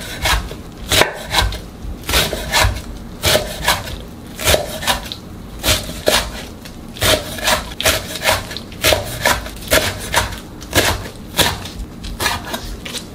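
Kitchen knife chopping blanched wild water dropwort (minari) into short pieces on a wooden cutting board: uneven knife strikes against the board, about two a second.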